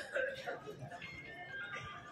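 A quiet melody of held tones that step from one pitch to another, heard under the hubbub of voices in the hall.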